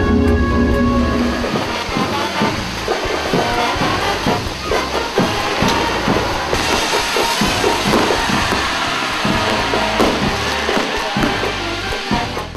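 Background music with held tones, joined after about a second and a half by dense, irregular crackling and popping from stage fountain fireworks that runs on through the rest.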